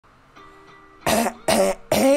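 A man coughing three times in quick succession, clearing his throat.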